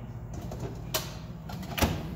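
A high-density polyethylene galley drawer pushed shut on its locking slides, giving two sharp knocks, the second and louder one near the end as it clicks home and locks for travel.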